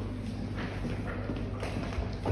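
Faint footsteps and light knocks of a child walking across a hall floor, over a steady low hum.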